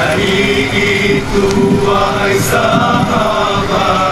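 A group of young men singing an Islamic qasidah in unison, in long, held, wavering notes like a chant.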